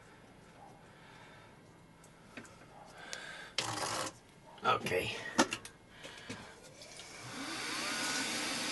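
Metal tools being set down and handled on a mill-drill table, with a few sharp knocks around the middle. Near the end the mill's spindle motor starts, its whine rising in pitch as it spins up to speed for drilling.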